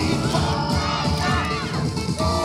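Upbeat yosakoi dance music playing, with a group of dancers shouting calls together twice.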